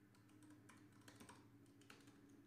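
Faint, scattered keystrokes on a computer keyboard, a password being typed at a terminal prompt.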